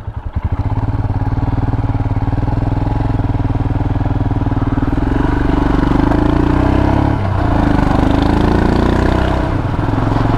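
Royal Enfield Himalayan's single-cylinder engine pulling away from a slow, beating idle and accelerating, its note rising from about five seconds in and dipping briefly about seven seconds in.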